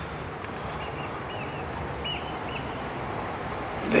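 Steady outdoor background noise, with a bird giving several short, high chirps in the first half.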